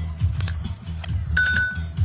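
Bass-boosted music from a mini sound system's E-box speaker cabinets, heard from far off so that mostly a deep, rhythmic bass pattern comes through. A short high ringing tone sounds near the end.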